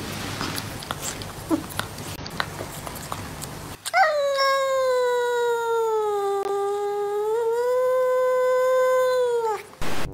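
A cat gives one long drawn-out yowl lasting about six seconds, starting about four seconds in. Its pitch sags slightly in the middle and lifts again before it stops. Before the yowl there is only faint room noise with a few small ticks.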